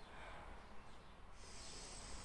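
Faint hissing sniff through one nostril while the other is pressed shut, starting about a second and a half in.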